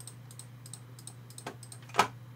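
Quick light taps of a pen stylus on a tablet surface, about one tap per dot marked, a dozen or so in rapid succession, over a steady low electrical hum.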